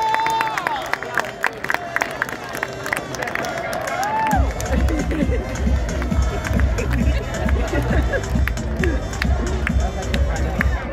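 Stadium crowd chattering and calling out, with scattered sharp claps. About four seconds in, music with a heavy bass beat starts over the loudspeakers.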